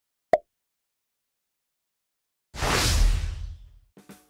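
Intro sound effects: a single short pop, then, after about two seconds of silence, a loud whoosh with a deep rumble underneath that fades out over about a second.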